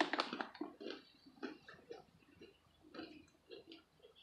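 Two people chewing crunchy blueberry yogurt-coated pretzels: a string of irregular crunches, loudest at the start.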